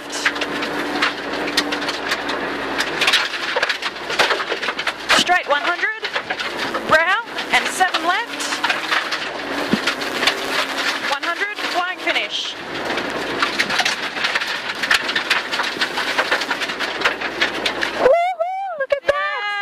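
Rally car engine revving hard and changing gear, its pitch climbing and dropping several times, heard from inside the cabin over a steady rattle of gravel and stones hitting the underbody.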